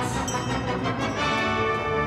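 Theatre orchestra playing the introduction to a show tune, settling into a held chord about a second in.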